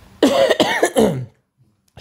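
A man coughing and clearing his throat, one bout lasting about a second.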